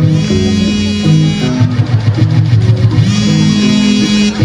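Acoustic guitar playing live, strummed chords with a moving line of bass notes underneath.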